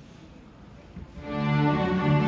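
Middle school string orchestra of violins, cellos and double basses coming in about a second in, after a quiet hall, with held sustained notes.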